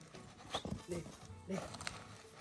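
A Mangalarga Marchador stallion being brought down onto its knees on dry dirt, with short vocal sounds about half a second in and again about a second and a half in, and a sharp knock just before the end.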